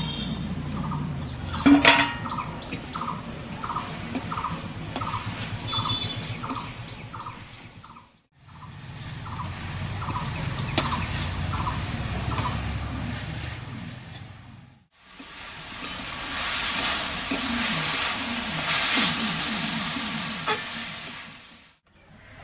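Metal spatula stirring and scraping drumstick flowers and green peas around a metal karai over a wood fire, with a sharp metal clank about two seconds in. The sound drops out twice briefly.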